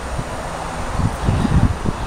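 Wind blowing across the microphone: a steady hiss with irregular low rumbling gusts.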